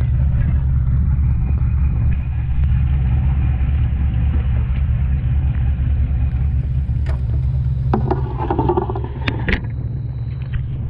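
Steady low machine rumble, such as a boat's engine or onboard machinery running, heard throughout. A few sharp knocks come in the last three seconds, with a short spell of water and handling noise as the diver climbs onto the stern platform.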